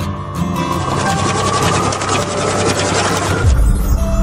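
Intro sound effect over music: a fast, even ratchet-like clicking with a slowly rising tone builds for about three seconds, then breaks off into a deep boom near the end.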